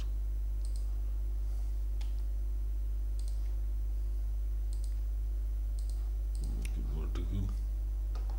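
A few scattered, faint computer mouse clicks over a steady low electrical hum.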